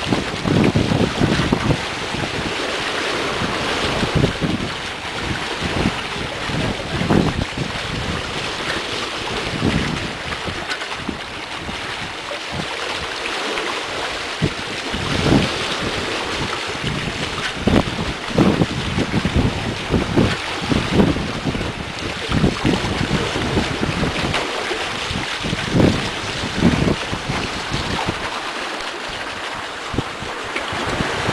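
Steady rush of sea water along a sailing catamaran's hulls, with irregular gusts of wind buffeting the microphone.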